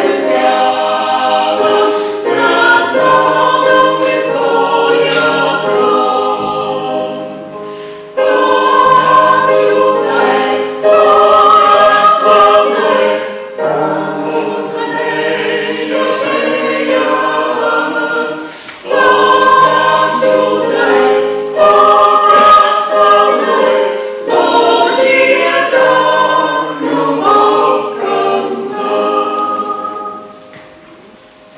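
A small mixed choir of men and women singing a hymn in several sung phrases, with short breaks between them about 8 and 18 seconds in. The singing fades out at the very end as the hymn closes.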